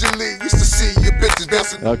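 Hip hop track with rapping over a bass beat, playing in a DJ mix; the low bass drops out for a moment twice.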